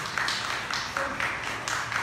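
Audience applauding after the music stops.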